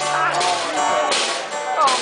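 Live band music in a bar: acoustic guitar and voices, broken by a couple of short, sharp crashes.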